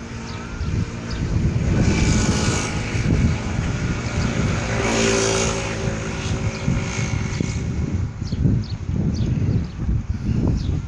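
Propeller airplane flying low overhead, its engine drone swelling to a peak about halfway through and then easing off.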